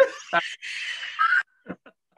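A man's breathy laughter for about a second and a half, ending abruptly, followed by a couple of faint clicks.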